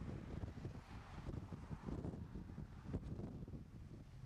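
Wind buffeting the microphone: an uneven low rumble and rush.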